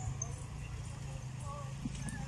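A steady low hum with faint snatches of distant voices.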